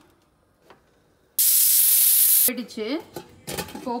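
Pressure cooker whistle: a loud jet of steam hissing for about a second, starting and stopping abruptly, after a near-silent first second.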